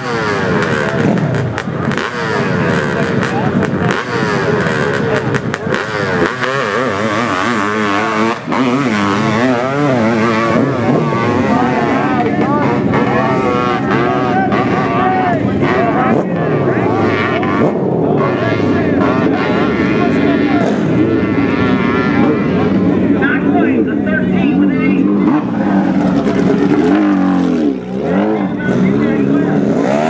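Honda CR500 two-stroke single-cylinder dirt bike engine revving hard under load as it climbs a steep hill, its pitch rising and falling constantly with the throttle. The sound briefly drops near the end.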